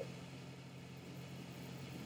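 Faint room tone between speakers: a low steady hum with light hiss.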